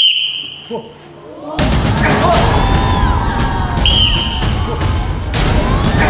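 A referee's whistle blast right at the start, the signal for the ssireum bout to begin, with a second short whistle near four seconds in. From about a second and a half in, loud edited-in music and shouting take over.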